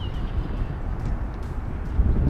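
Steady low rumble of wind buffeting the camera microphone, with a few faint clicks.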